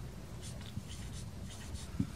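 Marker writing on a whiteboard: a series of faint, short scratchy strokes as numerals are written, starting about half a second in.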